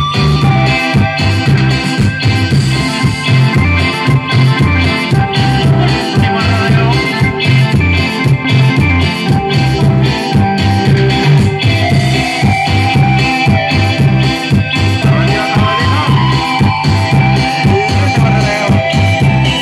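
Live cumbia band playing an instrumental passage: electric keyboard carrying the melody over a steady bass beat, with electric guitar and a metal güiro scraping the rhythm.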